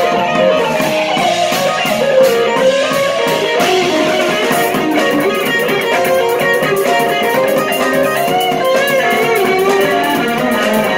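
Live jazz quartet of electric keyboard, electric bass, electric guitar and drum kit playing. The electric guitar stands out with a bending melodic line over the keyboard chords, bass and cymbal strokes.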